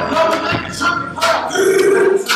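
Wordless vocal sounds from a person's voice, with one note held for a moment near the end.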